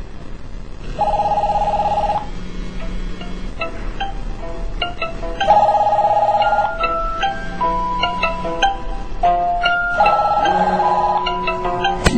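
Several mobile phones ringing at once: a trilled ring repeats in bursts about every four and a half seconds, while a melodic ringtone plays stepped notes between them.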